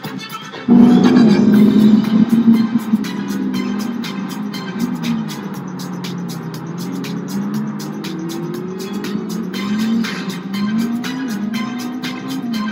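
Ferrari SF90 Stradale's twin-turbo V8 accelerating, coming in loudly about a second in, its note rising and dropping again and again with gear changes, over background music with a steady beat.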